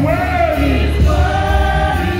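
Gospel praise team singing into microphones through a PA system over music with heavy bass. The voices hold long, wavering notes.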